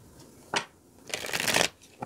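Tarot deck being riffle-shuffled by hand: one sharp card snap about half a second in, then a rapid riffle of cards near the middle, lasting about half a second and the loudest part.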